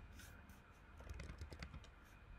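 Faint computer keyboard typing: a scatter of light key clicks as a short terminal command is typed.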